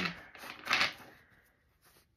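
A deck of tarot cards being shuffled by hand: two short rustles of sliding cards within the first second.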